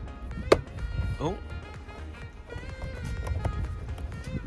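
A sharp plastic click about half a second in as a replacement car wing mirror housing is pressed onto its frame, which he doesn't think has clipped in. Background music plays throughout.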